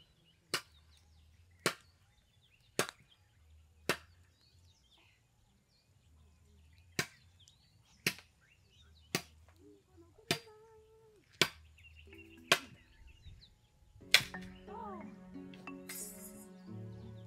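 Machete chopping into a wooden pole: eleven sharp, separate strokes about a second apart, with a pause of some three seconds after the fourth. Music comes in near the end.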